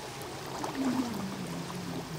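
Swimming-pool water sloshing and splashing around swimmers as a learner dips under, with a low hum sliding slowly down in pitch through the middle.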